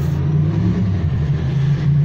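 Steady low rumble of a running engine, with a faint hiss above it.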